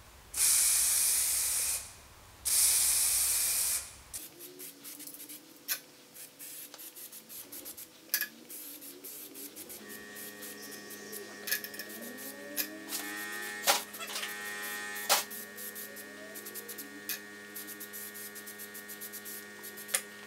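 Two bursts of an aerosol can of cold zinc spray primer, each about a second and a half long, in the first four seconds. Scattered clicks follow, and a steady low hum starts about halfway through.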